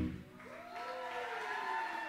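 A live band's last chord stops right at the start, then an audience cheers, with a drawn-out whoop rising and falling in pitch.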